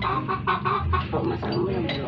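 Chickens clucking in short, irregular calls, several a second.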